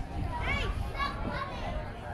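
Children playing on playground equipment: several short, high-pitched children's calls and shouts, with a steady low background hum beneath them.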